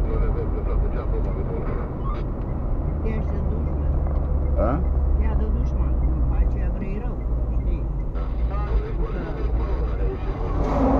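Car driving, heard from inside the cabin: a steady low rumble of engine and tyres on the road, with the pitch of the rumble shifting slightly about seven seconds in.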